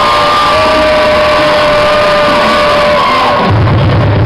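Loud dance music at a live show, with long held notes over it and crowd whoops and shouts; a heavy bass beat comes in about three and a half seconds in.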